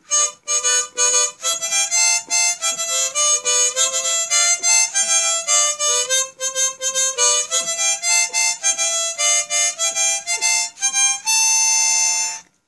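Harmonica played solo: a quick melody of many short notes moving up and down, ending on a long held chord.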